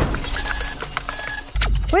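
Edited sound effects: a noisy swoosh at the start, a few short high electronic beeps through the middle, and a deep low boom about a second and a half in.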